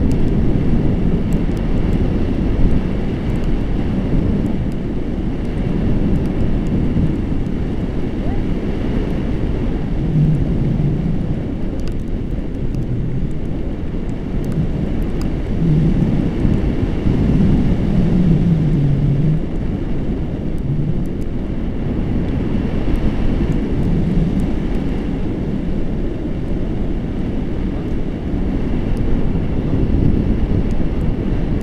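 Wind rushing past a paraglider in flight and buffeting the microphone: a steady, loud, low rumble. Muffled voices come through faintly now and then.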